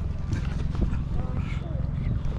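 A bass boat's outboard motor running under way, a dense, pulsing low rumble, mixed with wind buffeting the microphone.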